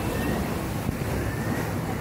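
Rushing whitewater churning around a river-rapids raft, a steady noisy rush, with wind buffeting the microphone.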